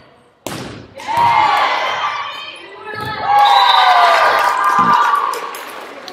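A volleyball rally: a sharp hit of the ball about half a second in and further ball contacts, under many voices shouting and cheering that swell again as the point is won.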